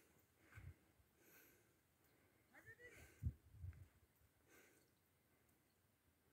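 Near silence, broken by a few faint low thumps, the loudest about three seconds in.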